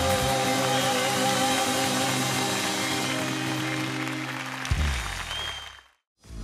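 A live band holds the closing chord of a Turkish folk song over clapping from the audience. A last low chord sounds near the end and then fades out to silence.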